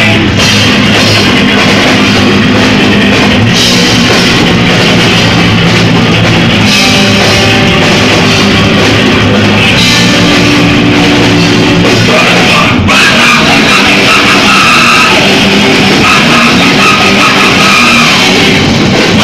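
A rock band playing live and loud: electric guitars and a drum kit in heavy rock, continuous throughout.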